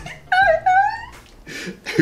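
A woman laughing into her hand: two high, squeaky held notes in the first second, then quieter breathy laughter.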